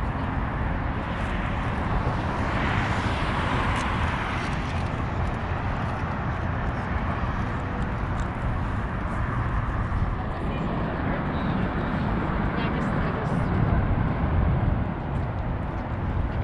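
Outdoor city ambience on a walk: wind buffeting the microphone over a steady wash of traffic noise, swelling briefly a few seconds in.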